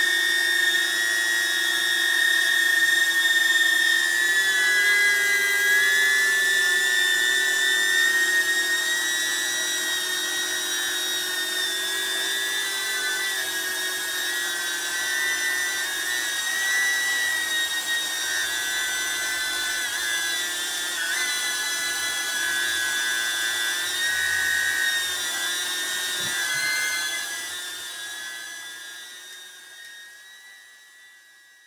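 DJI Neo mini drone on Gemfan D51 51 mm propellers hovering: a steady high-pitched propeller whine whose pitch wavers slightly as the motors hold position. It fades out over the last few seconds.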